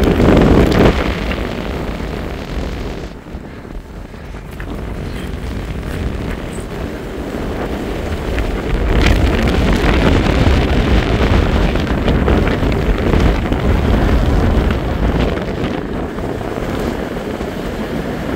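Strong wind buffeting the microphone in gusts, easing a few seconds in and blowing hardest in the middle of the stretch.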